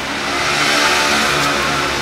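A motor vehicle engine passing on a city street. Its noise swells to a peak about a second in and then slowly fades.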